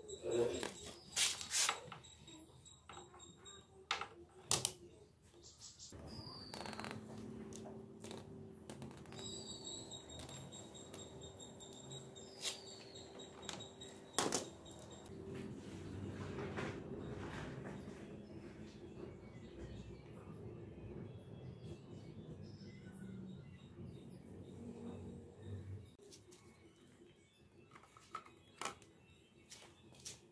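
Pliers and metal clicking and knocking against the stuck oil dipstick of a 1984 Honda XL125S engine, whose O-ring is stuck. There are a few sharp clicks in the first five seconds and one about fourteen seconds in, over a faint low hum, with thin high chirps coming and going.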